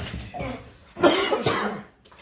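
A person coughing hard about a second in, a harsh, raspy burst, brought on by the burn of Carolina Reaper chili wings.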